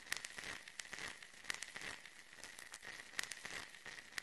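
Faint crackling: irregular sharp clicks over a thin hiss, with a faint steady high tone underneath.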